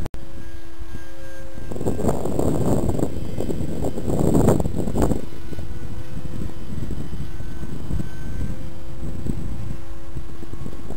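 Wind buffeting the microphone, heaviest between about two and five seconds in, over a faint steady whine from the model F-16's electric ducted fan flying at a distance.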